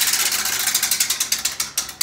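Tabletop prize wheel spinning down, its top pointer clicking rapidly against the pegs; the clicks spread out as the wheel slows and stop right at the end.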